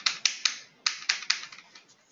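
Typing on a computer keyboard: two short runs of about three sharp keystrokes each, with a brief pause between them.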